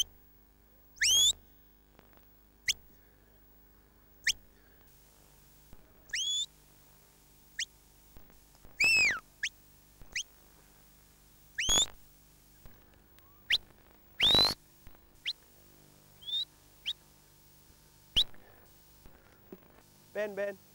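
Handler's shepherd whistle giving commands to a working sheepdog: about a dozen short, sharp whistle notes, some rising, some falling, with a few in quick pairs. The signals steer the dog as it moves the sheep.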